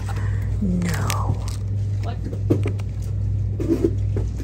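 Plastic-wrapped ribbon spools handled on a wire store shelf: a few light clicks and rustles over a steady low hum. A brief voice sound comes about a second in.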